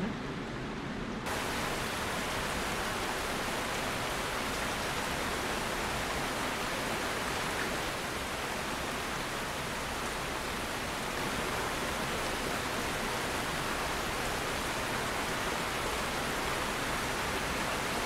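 A steady, even rushing noise like heavy rain or static, with no music or voice heard in it. It fills out and brightens about a second in and cuts off suddenly at the end.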